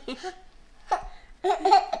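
A baby laughing: a short laugh about a second in, then a run of quick laughs near the end, with adults laughing along.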